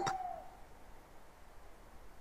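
A quiet pause of faint background hiss, just above near silence, after a brief faint falling tone at the very start.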